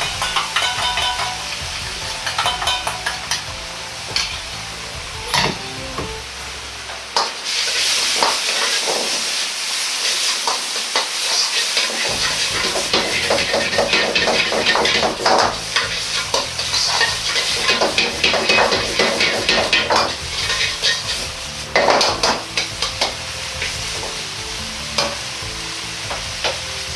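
Crumbled tofu meat and vegetables stir-frying in a wok with the sauce just added: steady sizzling throughout, with frequent scrapes and knocks of a metal ladle against the wok as it is tossed.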